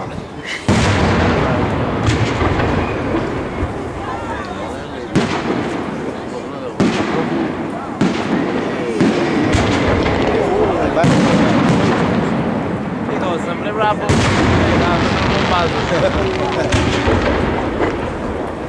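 Aerial firework shells bursting overhead: sharp reports about a second in, near five and seven seconds, and at fourteen seconds, each followed by a long rumbling echo.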